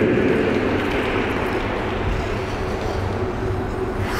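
Steady, low background noise of an ice rink arena, with no clear single source.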